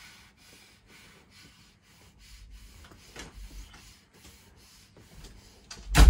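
Faint rustling and rubbing of clothing and bodies against a wooden floor as a person is held down with a hand over her mouth, with a heavy low thump right at the end.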